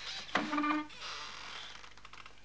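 A man's short wordless grunt, held on one pitch for about half a second, followed by a soft breathy exhale.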